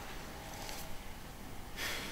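Quiet room with faint handling sounds, then near the end a short, sharp breath of air, like a person huffing out through the nose.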